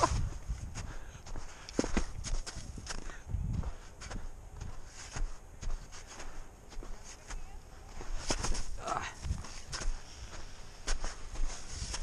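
Skis, poles and clothing moving in deep powder snow: scattered crunches, scuffs and low thumps. A brief laugh comes about nine seconds in.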